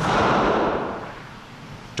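Controlled detonation of unexploded First World War shells by bomb disposal: one sudden blast whose noise dies away over about a second and a half.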